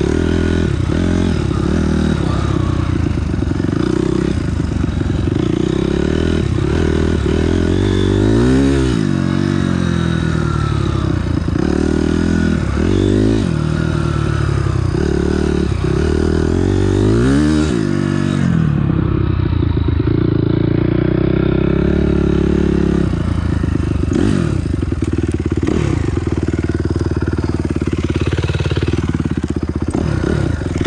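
2006 Honda CRF250R's four-stroke single-cylinder engine heard from on board, ridden at low speed through warm-up turns, the throttle opened and eased so the revs waver. Three times in the middle the revs climb sharply and drop back.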